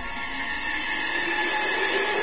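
Electronic background music in a build-up: a rising noise sweep that grows steadily louder.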